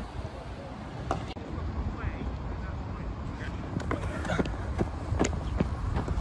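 Outdoor ambience: a steady low rumble under a light haze of noise, with faint distant voices and a few short knocks or clicks.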